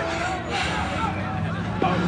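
Distant voices of players calling out across a softball field over a steady low hum, with a single faint click near the end.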